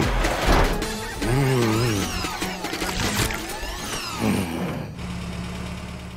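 Cartoon truck engine sound effect as the truck drives off, over background music, settling into a low steady hum near the end.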